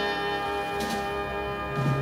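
Instrumental ending of the song: the orchestra holds a sustained chord with a bell-like ring, and soft strokes come about a second in and again near the end.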